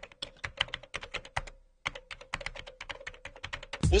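Rapid, uneven keystrokes on a laptop keyboard, with a short pause about a second and a half in.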